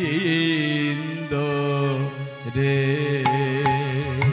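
Bengali devotional kirtan: a male voice singing a long, wavering note over a sustained harmonium, with khol drum strokes coming in about three seconds in.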